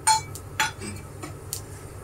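Steel kitchen utensils clinking: a sharp metallic clink with a brief ring at the start, a second clink about half a second later, and fainter ticks after a second.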